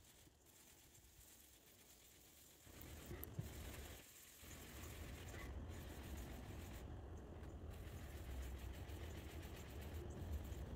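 Faint rubbing of a microfiber applicator pad worked back and forth over car paint, with a low rumble that comes in about a quarter of the way through and stays.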